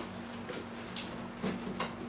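A cardboard box being handled, giving a few light clicks and rubs about half a second apart over a faint steady hum.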